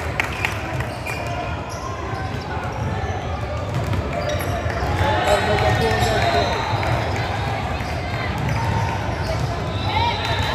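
Indistinct chatter of players and spectators echoing around a gymnasium, with a basketball bouncing on the hardwood court.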